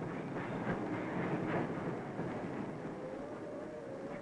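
Train running at a railway depot: a steady rattling rumble, with a faint wavering tone joining about three seconds in.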